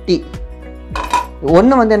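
Stainless steel plate clinking and knocking as it is handled with the fruits on it, the loudest clink about a second in, over steady background music.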